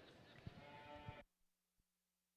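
Faint arena background with a short, high bawl from a Hereford heifer calf, then the sound cuts off abruptly to dead silence a little over a second in.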